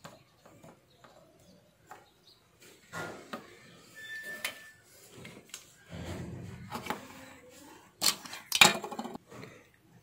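Small clicks, taps and rustles of a mobile phone charger's circuit board, cable and plastic case being handled and fitted together, with a few sharper clicks about eight to nine seconds in.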